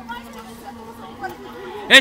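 Only speech: several people chattering, then a voice calls out loudly near the end.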